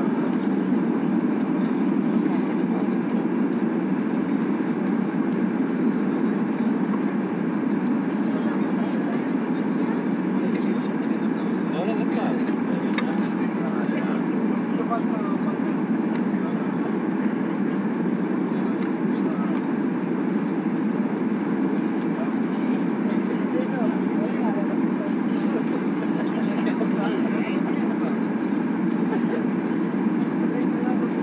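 Steady rumble of engine and airflow noise inside the cabin of a Ryanair Boeing 737 descending on final approach.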